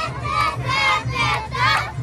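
Awa Odori children's dance troupe shouting chant calls together, three loud shouts in under two seconds, over a continuous festival crowd din.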